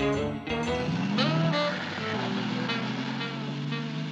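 A cartoon car engine sound effect rises in pitch about a second in, then settles into a steady low hum. It plays under a jazz score.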